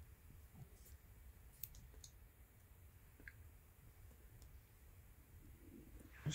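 Near silence: low room hum with a few faint, sharp clicks spread out over the seconds, small handling sounds of fingers working needle, silk thread and embroidery linen.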